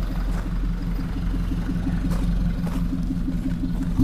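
Toyota Hilux's 2GD four-cylinder turbodiesel idling steadily through its side-exit exhaust, with an even pulsing note.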